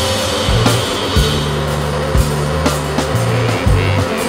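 Instrumental passage of a late-1990s British rock band recording, with no singing: drums hitting roughly once a second over held low bass notes and a dense, noisy band texture.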